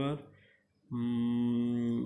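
A man's voice: a word trails off, a short pause follows, and then from about a second in he holds one long, steady, drawn-out vowel at an even pitch, a hesitation sound as he speaks.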